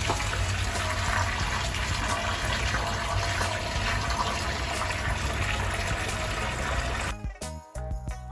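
Tap water pouring from a hose into a glass aquarium, a steady splashing rush into the standing water. About seven seconds in it cuts off abruptly and music takes over.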